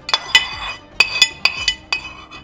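Metal spoon clinking against dishes as ground-meat mixture is scraped off a plate into a metal tube cake pan: several sharp, ringing clinks at uneven intervals.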